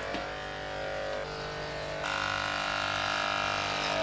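Corded electric hair clippers running with a steady buzz while trimming leg hair; about halfway through the tone shifts and gets a little louder.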